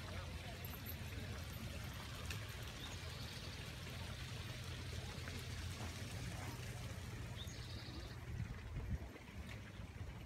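Steady outdoor ambience: an even hiss over a low rumble, with faint distant voices.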